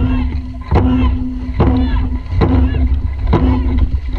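Dragon boat crew paddling in unison: a sharp stroke sound repeats a little more than once a second, over heavy wind rumble on the microphone.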